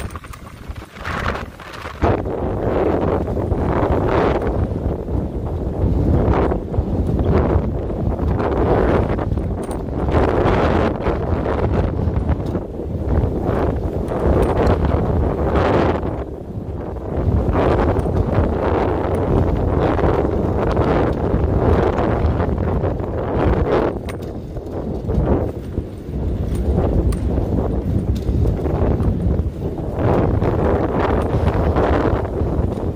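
Storm wind gusting hard against the microphone: loud low buffeting that swells and eases every second or two, from gale-force gusts of up to 80–90 km/h.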